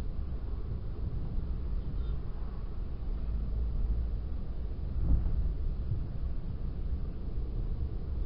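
Steady low rumble of a moving car's tyre and engine noise, heard from inside the cabin. A brief thump comes about five seconds in.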